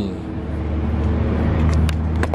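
Low engine rumble of a motor vehicle, growing louder over about two seconds and then dropping away, with a few light clicks near the end.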